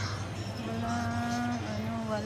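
A person's voice holding long, level sung notes, with a short bend between them, over a steady low hum.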